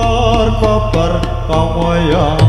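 Javanese gamelan music: bronze metallophones and gongs struck in a steady pulse, with a wavering vocal line sung over the ensemble.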